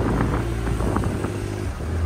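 Can-Am Maverick X3 XMR Turbo RR's turbocharged three-cylinder engine running steadily at low speed as the side-by-side creeps forward, with a few light ticks in the first second.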